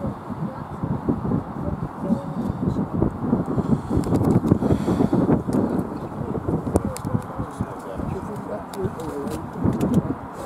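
Indistinct voices talking over a low rumble that swells about halfway through.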